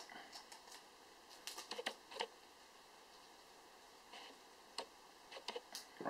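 A few light clicks and taps, a cluster about one and a half to two seconds in and a few more near the end, from hands and a small tool working the lock ring on the fill valve of a BSA Scorpion SE air rifle's air cylinder.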